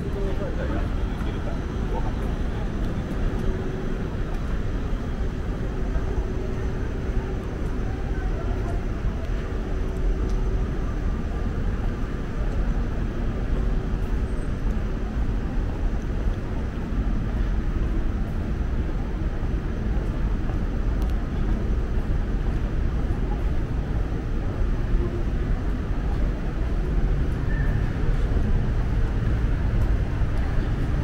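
Steady low city rumble of traffic and urban hum, with indistinct voices of passers-by mixed in, getting a little louder near the end.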